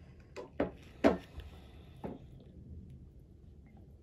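A few light knocks from handling a silicone spatula and a plastic measuring jug, then quiet room tone as stirring of the oils begins.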